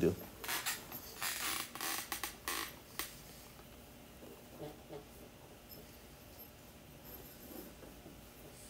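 Soft rustling noises for a couple of seconds, ending in a sharp click about three seconds in, then quiet room tone with a few faint small sounds.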